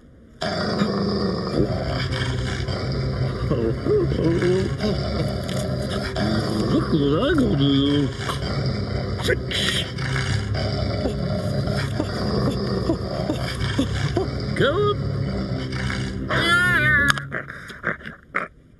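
A cartoon dog's long, low snarling growl that starts suddenly about half a second in and holds steady until just before the end, with muttering over it. Near the end comes a short, wavering high-pitched cry before the growl cuts off.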